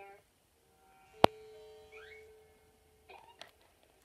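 A cartoon soundtrack playing from a television. About a second in, a sharp struck note rings on for about a second, followed by a short rising whistle-like glide. Brief voices come near the end.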